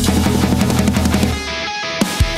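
A heavy metal band track: a drum kit played fast, with its snare miked by a Lauten LS-208 and its toms by Lauten LS-308 condensers, under electric guitars. About one and a half seconds in, the drums and cymbals drop out, leaving a ringing guitar chord.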